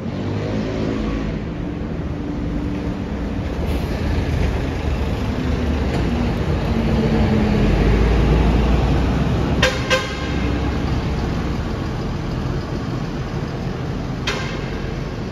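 Road traffic with a city bus passing close by, its engine rumble loudest about eight seconds in. Just after, a vehicle horn gives two short toots.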